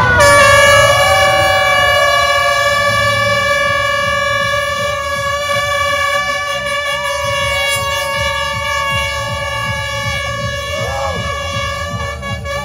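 A race-start air horn sounds in one long, unbroken blast at a steady pitch to send off a running race. Shouts and cheers from the crowd carry over it.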